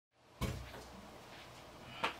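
A single dull knock, like a wooden cupboard door or piece of furniture being bumped, about half a second in, followed by a faint steady room hum.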